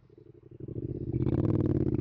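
Motorcycle engine running, starting faint and growing louder about half a second in, with a rougher, hissier sound added from a little past a second.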